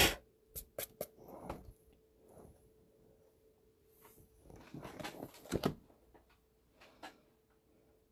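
A few sharp clicks and knocks with some rustling, from a phone camera being picked up and repositioned over the desk, with another cluster of knocks a little after the middle.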